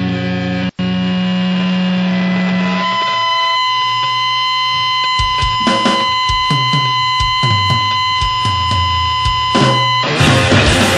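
Punk/powerviolence track intro: a held distorted guitar chord rings on, cut off for an instant about a second in, and fades out by about three seconds. A steady high buzzing tone then runs on, and irregular drum hits join from about five seconds in. The full band crashes in right at the end.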